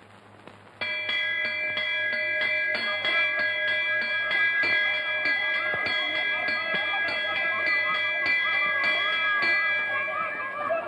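A metal school bell starts ringing about a second in and keeps ringing, struck rapidly about three times a second, with its clang hanging on between strikes.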